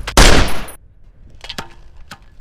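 A single loud handgun shot about a quarter second in, cut off sharply about half a second later, followed by a few faint clicks.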